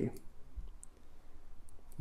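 A few faint, scattered small clicks over quiet room tone.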